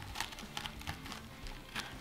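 Chef's knife cutting a head of green cabbage in half on a wooden board: faint, crisp crackling clicks as the tight leaves split.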